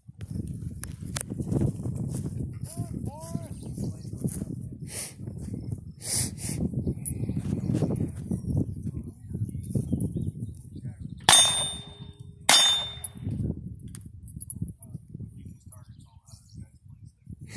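Two sharp gunshots about a second apart, the loudest sounds here, with a steel target ringing after them. A steady low rumble of wind on the microphone and movement runs underneath.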